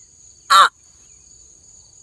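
A person's single short, sharp yell of pain about half a second in, as a turtle bites his hand.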